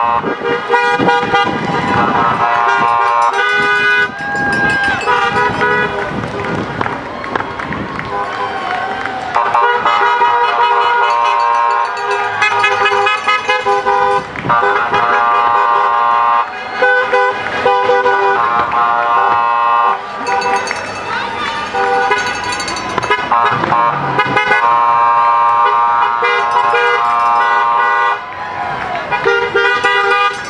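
Car horns honking in long held blasts, one after another, as a line of cars drives slowly past, with people's voices shouting in between.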